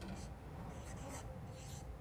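Felt-tip marker writing on flip-chart paper: a few short, faint strokes.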